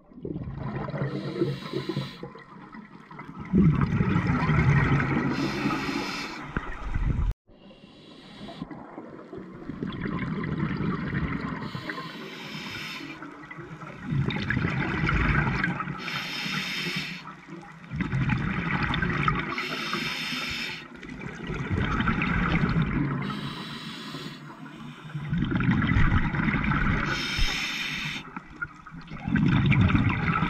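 Scuba breathing heard underwater: a short hiss of inhalation through the regulator's demand valve, then a longer, louder rush of exhaled bubbles, repeating every few seconds. The sound breaks off suddenly once, about seven seconds in.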